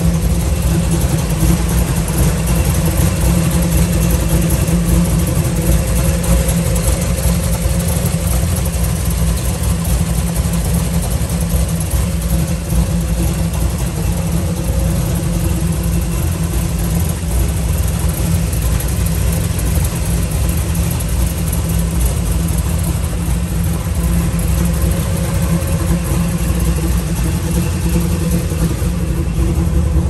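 The 1967 Chevrolet Camaro's freshly rebuilt 350 cubic-inch V8, fitted with headers, idling steadily.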